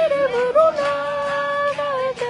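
A Christian praise song sung to an acoustic guitar, with one voice holding long, steady notes.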